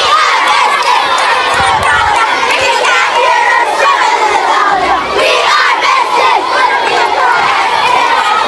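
A crowd of schoolchildren shouting together in protest, many voices at once without a break.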